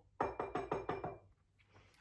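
A quick run of about eight knuckle knocks on a hard surface in about a second, imitating someone knocking loudly on a door.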